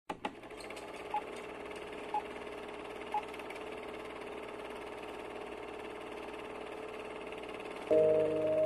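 Film-projector sound effect: a steady, quiet mechanical whirr and clatter, opening with two clicks and carrying three short beeps one second apart in the first few seconds.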